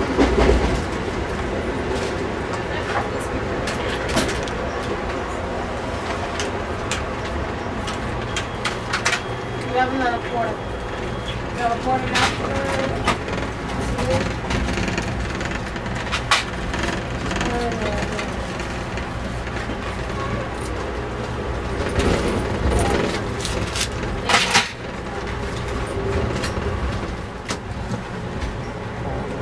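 Steady rumble and rattle of a moving Amtrak passenger car heard from inside, with frequent knocks and clunks, under background passenger chatter.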